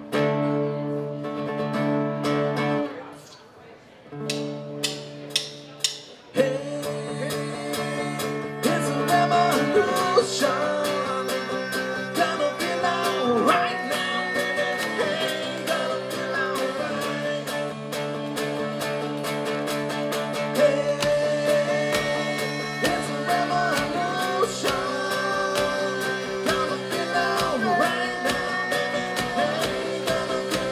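Live rock band starting a song: guitar chords ring out twice, the second time over a few sharp clicks, then drums come in about six seconds in and the full band plays on with singing.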